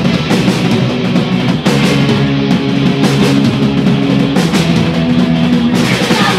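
Punk rock band playing live: two electric guitars, bass guitar and drum kit driving a loud, steady instrumental passage with no singing.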